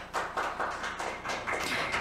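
A small group of people clapping their hands, an uneven run of claps.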